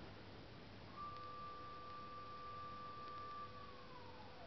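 A high steady tone, held for about two and a half seconds and then sliding down in pitch, over a quieter lower steady tone.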